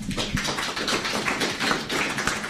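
Applause: many people clapping together in a dense, steady patter.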